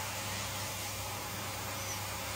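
A pet grooming blower running steadily: an even hiss over a low motor hum.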